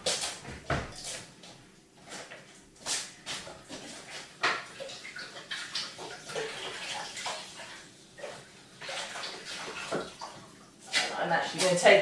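Tap water running and splashing in a sink as food packaging is swirled and rinsed out, with scattered knocks and clatters.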